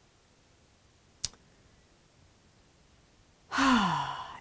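A woman's sigh near the end: a breathy exhale with voice, falling in pitch. Before it, near silence with one short click about a second in.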